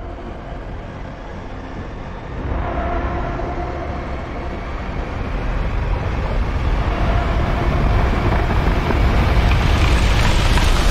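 Heavy engine noise of a speeding convoy, a big truck with motorcycles around it, in a film-trailer sound mix, growing steadily louder, with a few held tones coming and going over it.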